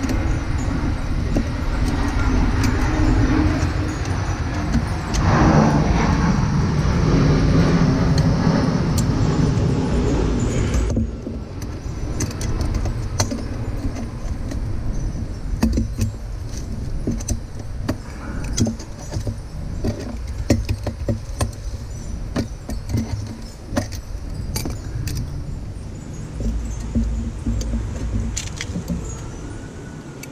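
Pliers clicking and clinking against the metal gauge fitting on a pool pump's plumbing as the vacuum gauge is worked loose. A loud, steady rushing noise fills roughly the first third and cuts off suddenly about 11 seconds in.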